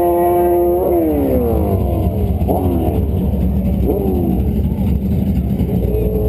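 Drag-racing car engine held at steady high revs, then launched: about a second in the pitch drops and slides down, then twice more jumps and falls away, like gear shifts as the car pulls off. Near the end another engine holds a steady pitch.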